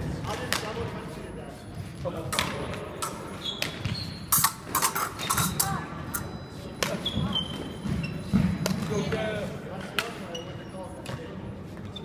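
Épée fencing bout: irregular sharp clacks of blades and stamping footwork on the gym floor, loudest near the middle and again later, with a few short high squeaks and voices in the background.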